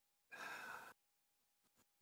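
A man's single audible breath, about half a second long, a little way in; the rest is near silence.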